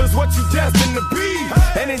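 Hip-hop backing track with rapping: a beat with deep bass-drum strokes that drop in pitch, under a rapped vocal that starts a new line near the end.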